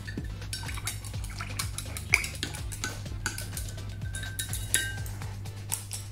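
Paintbrush tapping and scraping against a metal palette tray while loading paint: a run of small, irregular clinks and clicks.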